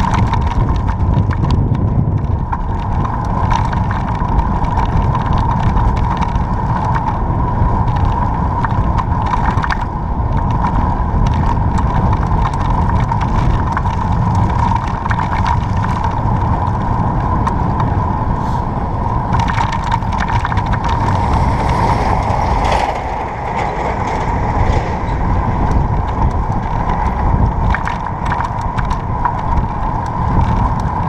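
Riding noise from a camera mounted on a moving bicycle: wind rumbling on the microphone, mixed with many small rattling clicks and a steady high hum. The rumble eases for a moment about three quarters of the way through.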